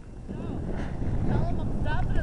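Wind buffeting the microphone as a low, steady rumble that grows louder after a quiet start, with faint distant voices calling over it.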